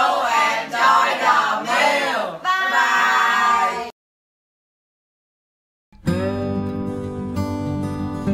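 A group of young teenagers calling out together in unison for about four seconds, cut off abruptly into silence. About six seconds in, acoustic guitar music starts.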